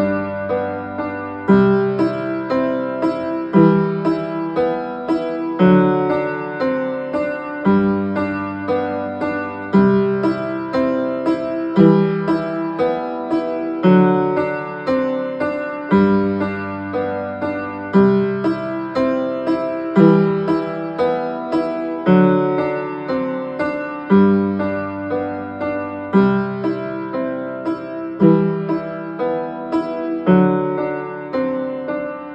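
Upright piano playing a brisk, steady accompaniment in G major: a pattern of repeated notes over a low note that comes back about every two seconds.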